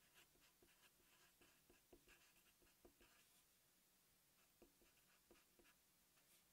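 Very faint scratches and taps of a Sharpie marker writing on paper, a scattering of small ticks over near silence.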